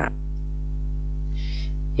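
Steady low electrical hum with a buzzy, many-toned edge in the recording, audible between the spoken lines. A brief soft hiss sounds about three quarters of the way through.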